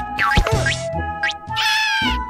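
Cartoon background music with a steady tune, over which a cartoon rabbit character makes several squeaky, meow-like vocal cries that slide up and down in pitch, the last one higher and held near the end.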